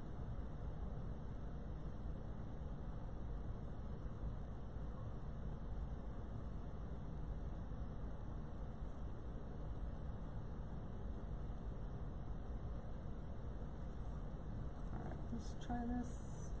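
Steady room noise: a constant low rumble with an even high hiss over it, and no distinct handling sounds.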